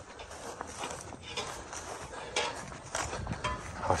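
Footsteps walking across a grass lawn, with a few light, irregular knocks and rustles.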